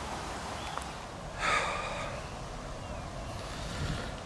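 A short breathy exhale close to the microphone about one and a half seconds in, over a steady outdoor background hiss.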